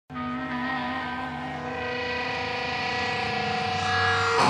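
Electric guitar held through its amplifier, a sustained ringing chord of several steady tones that starts suddenly and slowly swells louder.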